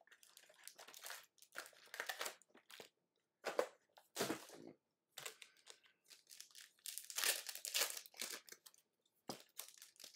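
Plastic trading-card pack wrappers crinkling and tearing as hands handle the packs and open one, with cards being slid and set down, in short scattered rustles that are busiest from about seven to eight and a half seconds in.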